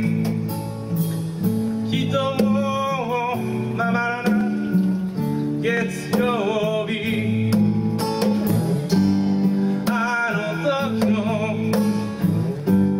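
Live acoustic band music: two acoustic guitars playing chords with drums and cymbals keeping a steady beat, and a melodic line carried over them in the singing range.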